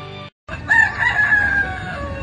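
A rooster crowing once, starting about half a second in: one long call that falls slightly in pitch.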